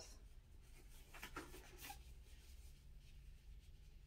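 Faint rustling of disposable gloves being pulled onto the hands, a few soft rustles between one and two seconds in, otherwise near silence.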